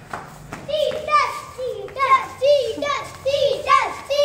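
Children's high voices chanting together in a quick, even rhythm, about two calls a second, each call with the same rise and fall: a counting-out chant to pick who is "it" for a game of tag.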